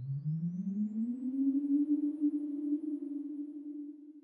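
Electronic sound effect: a low synthesized hum that rises in pitch over about a second and a half, then holds steady, with a faint high whine climbing above it.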